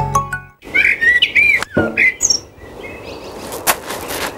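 A short chiming TV-channel ident jingle that ends about half a second in, then birds chirping in quick gliding calls, and a sharp knock near the end.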